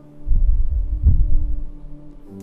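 Sustained keyboard pad chord, with a deep rumbling throb rising under it about a quarter second in, swelling twice and fading away near the end.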